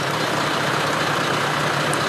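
A steady, even rush of noise with a low hum beneath it, like a large engine running.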